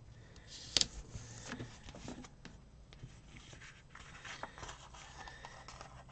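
Quiet paper handling as a sticker is positioned and pressed onto a planner page: soft scrapes and light taps, with one sharp click about a second in.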